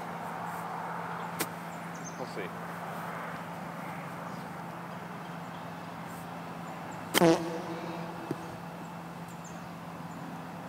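A golf club striking the ball on a chip shot: one sharp click about seven seconds in, the loudest sound, heard over a steady low hum of background noise.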